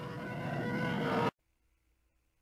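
Film soundtrack of a rainy street chase: vehicle noise swelling steadily louder under a held steady tone, cut off abruptly just over a second in, leaving dead silence.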